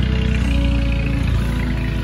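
A motor running with a steady low hum, under background music.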